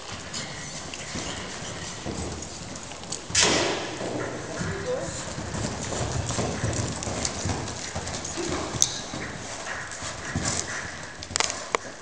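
A horse's hoofbeats on arena dirt as it gallops a barrel-racing run and then slows. A loud sudden noise comes about three and a half seconds in.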